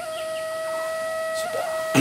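Background music: a flute-like wind instrument holds one long, steady note.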